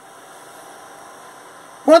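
Steady, faint background hiss of room tone with no distinct events; a man's voice starts just before the end.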